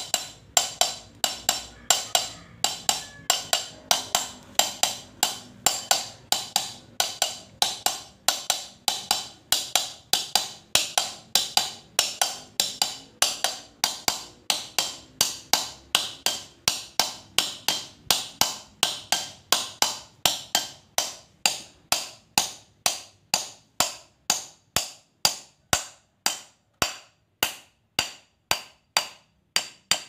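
Light, even hammer taps on a steel punch, about three a second, driving a new tapered bearing cup into the pinion bearing housing of a Toyota Dyna 130 HT differential; each strike rings bright and metallic. The taps are kept small so the cup goes in square without cracking, and they space out slightly near the end as it seats flush.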